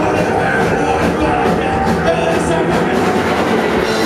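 Live rock band playing loudly: electric guitars and bass over a drum kit, with steady cymbal and drum hits.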